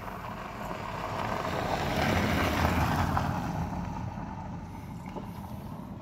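A vehicle passing by on a gravel road: tyre and engine noise swelling up, peaking about halfway through, then fading away.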